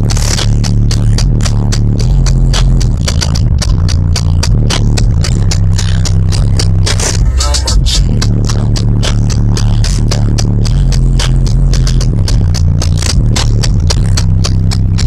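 Bass-heavy music played loud through a car stereo with a single 12-inch trunk subwoofer, heard from inside the cabin: a deep bass line stepping between notes under quick, regular drum hits.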